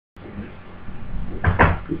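Steady room hiss and low hum picked up by a webcam microphone, slowly getting louder. A brief soft noise comes about a second and a half in, just before the man starts talking.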